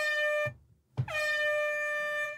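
Air horn sound effect blasting: one blast cuts off about half a second in, and after a short gap a longer steady blast starts, the last of three.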